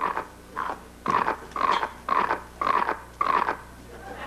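A series of about seven short animal-like growls, evenly spaced roughly half a second apart, made for an unseen creature inside a large wicker basket.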